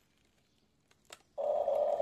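Huina RC excavator's electric drive motors starting up with a steady high-pitched whine that comes on suddenly about one and a half seconds in, after a near-silent start with a couple of faint clicks.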